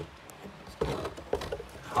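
Scattered light clicks and scrapes of hands working at the plastic body shell of an RC touring car, trying to work it loose.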